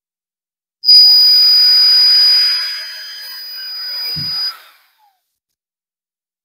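Cordless drill running at speed as its bit bores a hole through a slice of pumpkin: a steady high whine that eases off about two seconds in, builds again, then stops suddenly near the end. A light knock just before it stops.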